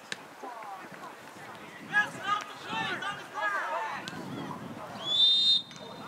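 Voices shouting, then a single short blast of a referee's whistle about five seconds in, stopping play.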